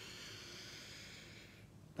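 A woman's slow, deep breath in through the nose: a faint, steady rush of air that fades out shortly before the end.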